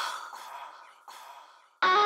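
A breathy vocal sigh with reverb, heard twice about a second apart, each time fading away. Near the end the song's full mix comes in loudly with sung vocals.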